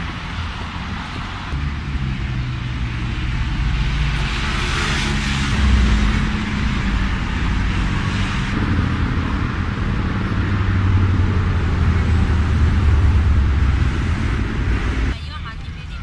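Motor vehicle engine running close by amid road traffic noise, growing louder through the middle and dropping off suddenly near the end.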